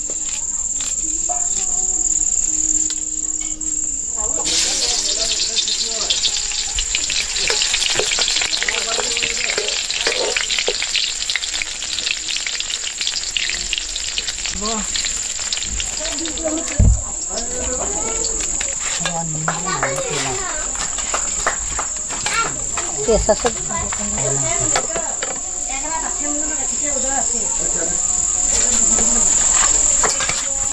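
Crickets trill steadily throughout. From about four seconds in, food sizzles in hot oil in an iron wok as a metal spatula stirs it. The sizzle thins out in the second half, leaving a few knocks and handling sounds.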